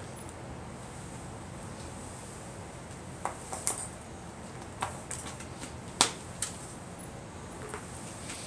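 A few light clicks and knocks as a tobacco tin is handled and set down on a concrete ledge, the sharpest knock about six seconds in, over a steady low background hum.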